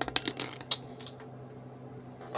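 Small metal lock-picking tools clinking: a quick cluster of sharp metallic clicks in the first second, then one more click shortly after.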